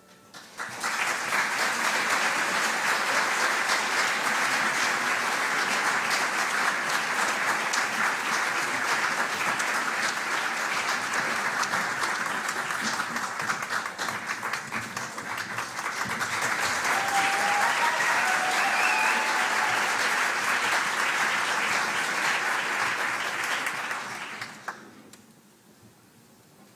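Audience applauding in a concert hall. The applause starts about half a second in, as the last note dies away, holds steady, and fades out about a second before the end.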